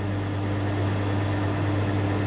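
Steady low electrical hum with a faint higher tone and an even background hiss; nothing else sounds.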